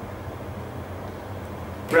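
Steady low background hum of room noise with no distinct events.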